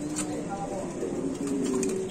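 Domestic pigeons cooing: several low, drawn-out coos at slightly different pitches.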